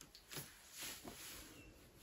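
Near silence: room tone with a few faint, brief soft noises.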